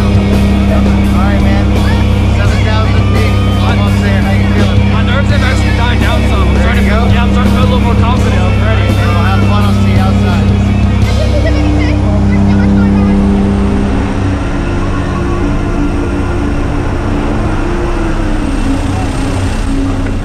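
Loud, steady engine drone inside a skydiving jump plane's cabin, mixed with music and voices.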